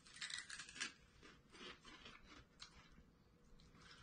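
Faint, irregular crunching of several people chewing finger-shaped cheese-flavoured puffed corn snacks.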